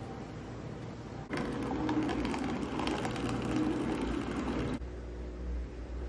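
Single-serve pod coffee maker running as it brews into a paper cup, a mechanical buzz and hum lasting about three and a half seconds that cuts off suddenly.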